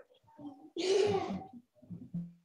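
A brief breathy vocal sound, about three-quarters of a second long, with a single held pitch. It reaches the listener through a video-call microphone.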